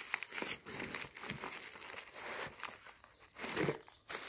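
Crinkling and rustling of a cardboard piñata's crepe-paper covering as hands grip it and work at it to make holes, with some paper tearing. A brief, slightly louder low sound comes about three and a half seconds in.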